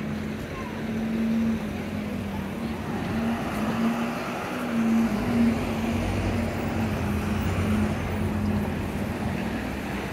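Road traffic: the engines of vehicles waiting close by run with a steady low hum, and a deeper drone joins about six seconds in, over a general street noise.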